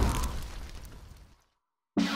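Tail of an explosion sound effect fading away over about a second and a half, leaving silence.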